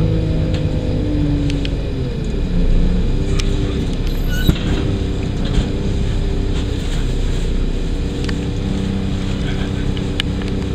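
Interior running noise of a Class 172 diesel multiple unit on the move: a steady engine and rail hum whose pitch shifts about two to three seconds in, with a single sharp click about four and a half seconds in.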